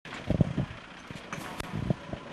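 Outdoor street background noise with a few short, low thumps, the loudest about a third of a second in.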